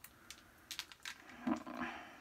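A small cosmetics package being worked open by hand: a series of scattered small clicks and cracks as it is pried at. It resists opening.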